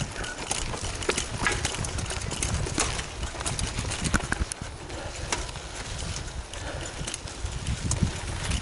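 Mountain bike rolling fast over a rocky dirt singletrack: tyres crunching over dirt and loose stones, with irregular clicks and rattles from the bike as it jolts over the rocks, above a low rumble.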